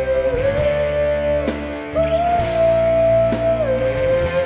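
Live band playing an instrumental passage of a pop-rock ballad: a lead guitar holds long notes that step between a few pitches, over bass and drums.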